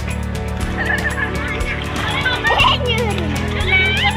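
Background music with a steady beat, overlaid by children's high calls and squeals as they play in the water; one voice slides down in pitch about two and a half seconds in.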